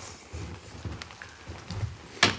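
Footsteps of a person walking across an indoor floor: a few soft thuds about half a second apart, with light clicks.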